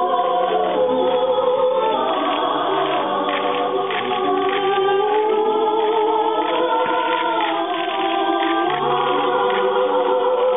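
Music: several voices singing long, sustained notes together in a choral style, with a soprano among them, the parts slowly gliding between pitches.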